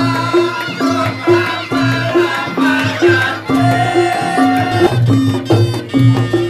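Reog Ponorogo gamelan music accompanying the dance: a low two-note gong pattern repeats steadily under drums, with a wavering reed-trumpet (slompret) melody above.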